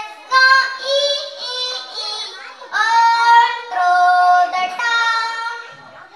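A young girl singing an English song solo into a microphone, in sung phrases with long held notes.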